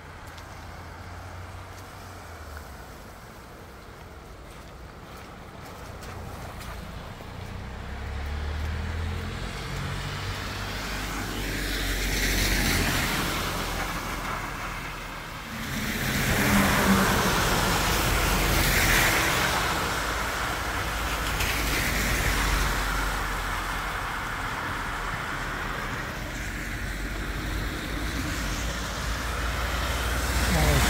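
Cars driving past on a flooded, rain-soaked road, their tyres hissing and splashing through the standing water along the kerb. It is fairly quiet at first, then several cars pass one after another in the second half, each a swell of spray-hiss over low engine rumble.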